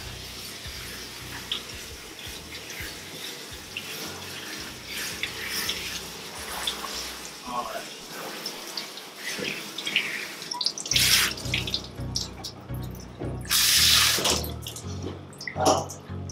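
Water spraying from a hose's trigger spray nozzle onto a wet cat and the stainless-steel tub, rinsing shampoo out of the coat. A steady hiss, with two louder rushes of spray, one about two-thirds of the way in and a longer one near the end.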